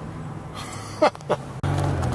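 Engine and road noise inside a moving van's cabin: a low steady hum, with two short falling sounds about a second in. Near the end the hum turns suddenly louder and deeper.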